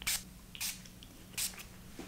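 Pump-spray bottle of body fragrance mist sprayed three times, each a short hiss, about two-thirds of a second apart.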